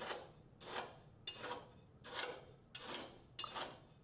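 Steel tamping rod being driven repeatedly into coarse gravel in a metal measure, each stroke a short gritty crunch and scrape of stones against the rod and steel walls, about six strokes evenly spaced. This is rodding, which consolidates a layer of aggregate for a bulk density (unit weight) test.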